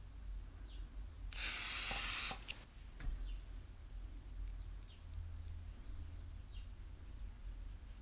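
Aerosol can of quilt basting spray, a temporary fabric adhesive, spraying one burst: a loud steady hiss about a second long, starting a little over a second in.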